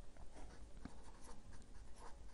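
Faint scratching of a pen writing on paper, in short uneven strokes.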